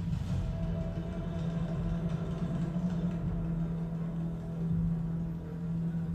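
Movie-trailer soundtrack: a steady low drone held on one deep tone over a continuous rumble.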